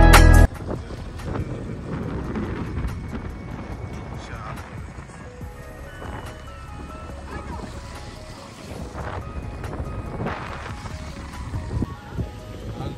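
Loud music cuts off about half a second in. After that comes wind on the microphone over the low running of a motorbike as it rides along.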